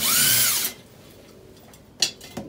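Power drill running as it unscrews the old boiler's wall bracket. The motor's pitch rises and falls, then it stops under a second in.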